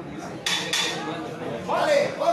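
People's voices around a boxing ring in a gym hall, with a sudden noisy onset about half a second in and a raised voice near the end.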